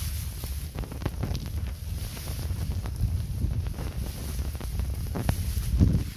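Wind buffeting the microphone as a steady low rumble, with scattered small clicks and rustles from grass and plants being handled close by.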